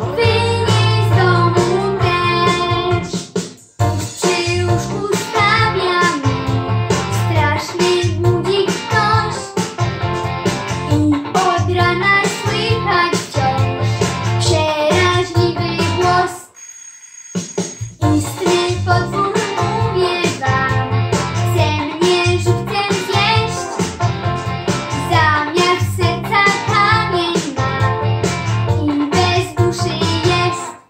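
A boy singing a song in Polish to a backing track. Voice and music break off briefly a little past halfway, then carry on.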